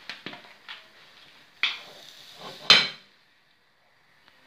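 Kitchenware knocking and clattering, like a utensil striking a bowl or pan: a few light clicks, then two louder knocks about a second apart. The sound then cuts off suddenly.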